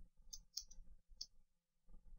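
A few faint clicks of computer keyboard keys being typed on.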